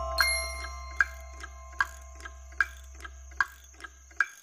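Pendulum clock ticking, an even tick-tock alternating louder and softer beats, about two and a half a second. A held music chord fades away underneath.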